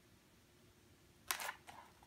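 Near silence, then about a second and a half in, a brief paper rustle and a couple of soft clicks as a hand takes hold of a picture book's page to turn it.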